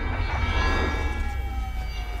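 Film soundtrack sound design for a sci-fi time machine: a deep rumble under several high electrical whines that slowly fall in pitch.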